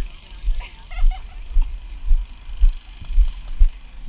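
Footsteps of a person walking at a steady pace, heard as dull thuds about twice a second through a head-mounted camera.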